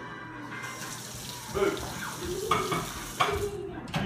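Water running steadily, like a tap into a sink, starting about half a second in and stopping just before the end.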